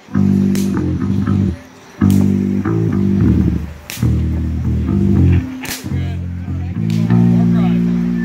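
Live rock band with distorted electric guitar and bass playing heavy held chords in stop-start chunks, broken by short gaps, with a few drum and cymbal hits.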